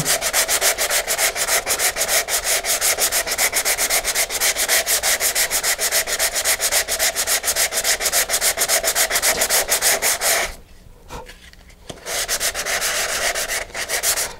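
Medium-grit sandpaper on a flat block rubbed in quick, even back-and-forth strokes over a CA-glue-stiffened paper rocket transition, sanding off the overlapping seam. The strokes stop for about a second and a half near the end, then start again.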